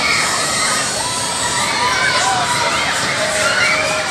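Riders screaming and shouting on a spinning fairground ride, several voices overlapping, with a few long held screams.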